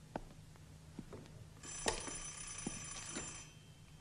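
An old telephone's electric bell rings once, a ring of nearly two seconds starting a little before the middle, with a few faint clicks around it. The ring is the operator calling back to put through the booked call to Salzburg.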